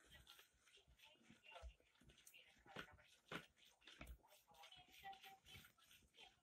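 Faint, irregular taps of a metal spoon against a plastic bowl as raw eggs are beaten by hand.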